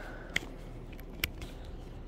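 Two short, sharp clicks about a second apart over a faint steady background.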